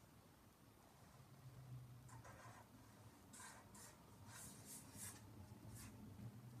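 Pen scratching on sketchbook paper, faint: a series of short drawing strokes from about two seconds in, over a faint low hum.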